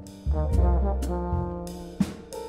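Jazz trombone playing a quick rising run of notes about a quarter second in, then holding long notes, with bass and drums playing behind it.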